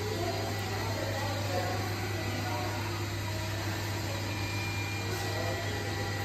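A steady low mechanical hum, like a motor or fan running, with faint voices in the first couple of seconds.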